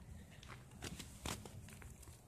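Faint crunching of snow as a plush toy is walked across it by hand, with a few soft separate crunches.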